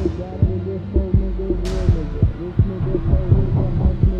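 Thriller soundtrack sound design: heavy, heartbeat-like bass thumps that drop in pitch, coming in an uneven rhythm, with short swooping tones above them and a hissing swish about halfway through.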